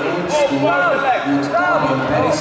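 Several voices talking and calling out at once, overlapping one another in a large hall.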